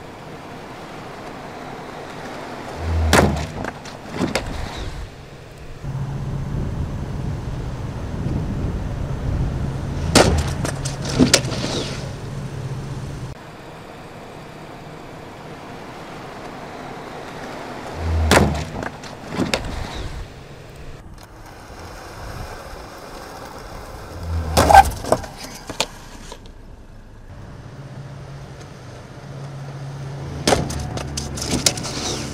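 Ford Fusion driving at about 25 mph with a steady low hum, broken four times by sharp knocks and low thuds: the car strikes the pedestrian dummy without braking, the autobrake failing to slow it.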